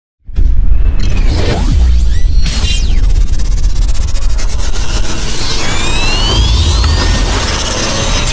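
Channel-logo intro music: whooshes and sweeping, rising electronic glides over a heavy deep bass, starting suddenly about a third of a second in.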